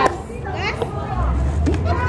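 Background chatter of several voices, with a brief high-pitched voice about half a second in, over a low rumble in the second half.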